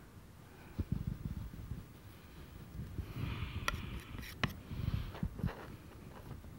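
Steel palette knife pressing and dragging thick oil paint on a stretched canvas, heard as irregular soft low thumps and a couple of sharp clicks. There is a short breath through the nose about three seconds in.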